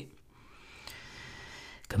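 A faint inhale by the male host into the microphone in a pause between sentences, with a small click about a second in.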